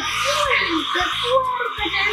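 Hand-held hair dryer running steadily, blowing on a model house built on sand, with music and voices underneath.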